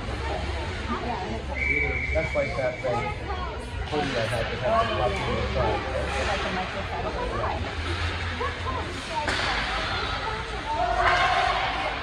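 Ice hockey rink sound during play: spectators talking and calling out over the scrape of skates on the ice. A brief, high, steady tone comes about two seconds in.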